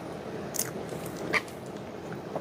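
Close-miked chewing of chili cheese fries, with two sharp clicks as a fork digs into the paper cup.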